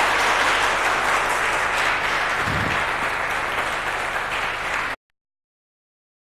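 Audience applauding in a lecture hall at the close of a talk; the applause cuts off suddenly near the end.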